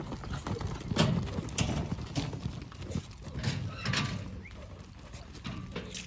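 Horses galloping on loose arena dirt: a run of irregular hoofbeat thuds, loudest about a second in and fading as they move away.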